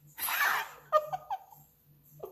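A woman laughing: a breathy burst, then three or four short pitched laughs about a second in.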